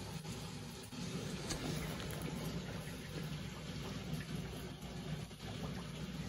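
Large aquarium's filtration running: a steady wash of moving water with a faint low hum underneath.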